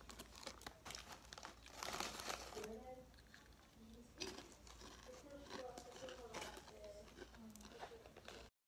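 Faint crinkling of plastic snack-bag packaging being handled, in scattered soft crackles.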